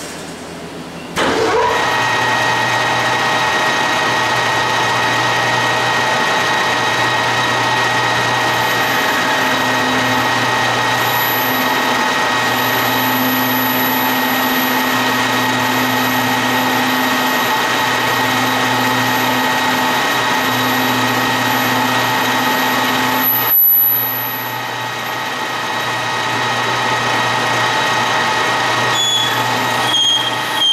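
H.E.S. 16"x50" engine lathe starting up about a second in, then running steadily at a raised spindle speed with a whine of several steady tones while it takes a light finishing cut. The sound dips briefly about three-quarters of the way through.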